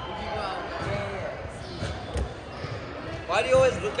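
A volleyball bouncing on a hardwood sports-hall floor, a few thuds about two seconds in, with voices calling out in the hall near the end.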